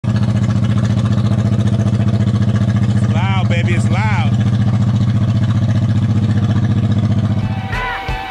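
1997 Honda VT1100 Shadow V-twin with Vance & Hines exhaust pipes idling, a steady, evenly pulsing exhaust note. A voice calls out briefly in the middle, and the engine sound fades out near the end.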